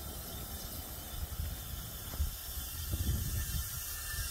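Propane hissing steadily through a brass refill adapter hose from a 20 lb tank into a 1 lb propane bottle: the sound of the bottle filling.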